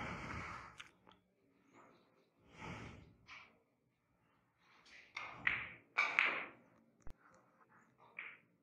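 Soft breathing close to a microphone, several breaths in and out, with a faint sharp click near the end.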